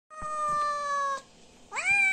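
A cat meowing twice: a drawn-out, slightly falling meow of about a second, then after a short pause a second meow that rises sharply near the end and carries on.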